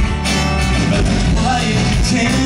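Rock band playing live and amplified, with acoustic and electric guitars, drums and keyboard in a steady, full mix.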